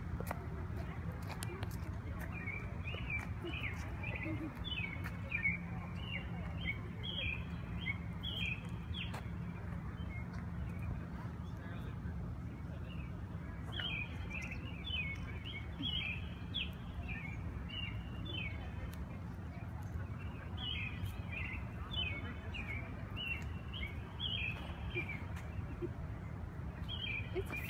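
Small songbird chirping in repeated runs of short, quick notes, in three spells with pauses between, over a steady low background rumble.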